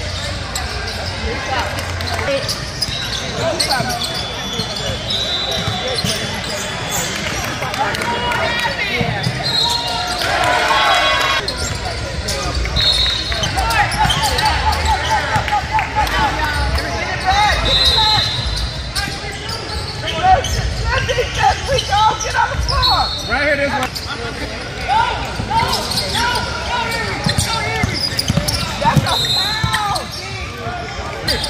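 Ball bouncing on a hardwood court during a basketball game in a large echoing gym, with repeated short high squeaks that fit sneakers on the floor. Voices of players and spectators shout throughout.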